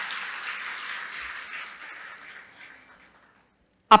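Audience applause, dying away over about three seconds.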